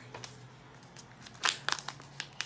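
Wrapping being pulled open by hand, crinkling and tearing. It is mostly a quick run of crackles in the second half.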